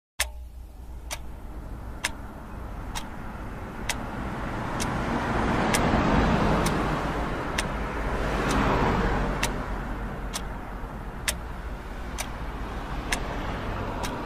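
Ambient noise with no music: a sharp tick about once a second over a low, rushing noise that swells and fades twice.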